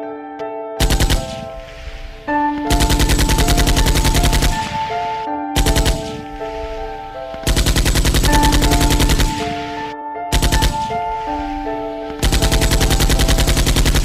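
Rapid bursts of machine-gun fire laid over a held, sustained instrumental melody: six bursts, short ones alternating with longer ones of about two seconds, the gunfire the loudest sound.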